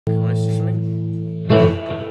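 Electric guitar chord ringing and slowly fading, then a second chord struck about one and a half seconds in.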